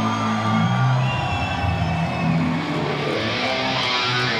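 Heavy metal band playing live: distorted electric guitars hold sustained notes in the song's intro, ahead of the full drum entry.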